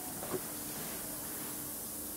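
Steady low hiss of workshop background noise with a faint steady hum. There is one light click about a third of a second in.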